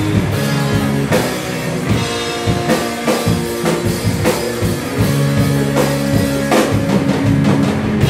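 Live rock band playing an instrumental passage: electric guitars, electric bass and drum kit, with frequent drum hits under held guitar and bass notes.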